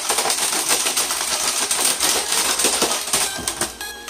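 Laptop's plastic casing and parts being twisted and broken apart by hand: a dense, rapid crackling and clicking. Music comes in near the end.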